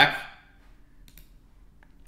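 A few faint computer mouse clicks in a quiet stretch.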